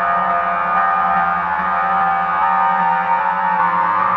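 Instrumental music: a dense layer of sustained tones held steady, shifting only slowly, like a drone.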